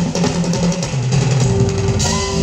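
Live smooth jazz band playing, with drum kit, bass and electric guitar.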